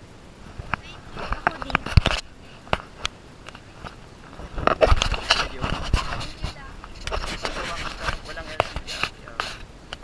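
People talking, with sharp knocks and scrapes from the camera being handled and moved, most of them in the first couple of seconds.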